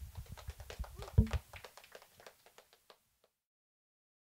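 Small audience applauding, a patter of hand claps that thins out and stops about three seconds in, with a brief voice about a second in.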